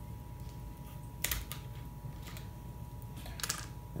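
A few light plastic clicks as the screw cap of a plastic soda bottle is twisted off and set down on the countertop.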